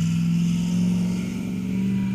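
A steady low engine-like drone, a motor running nearby with a constant hum and no clear change in speed.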